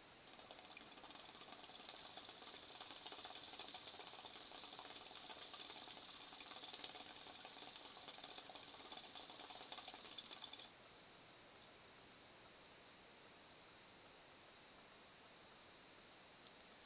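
Hookah water base bubbling faintly as smoke is drawn through the hose in one long pull of about ten seconds, stopping suddenly when the draw ends.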